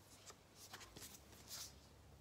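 Faint rustling of a paper 7-inch single picture sleeve being handled and turned over in the hands: a few soft, short rustles and light ticks, the clearest about one and a half seconds in.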